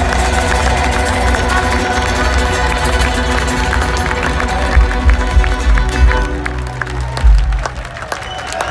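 Loud live folk metal band playing through a festival PA, with heavy low drums and bass under sustained guitar tones, and a crowd cheering; the music stops just before the end.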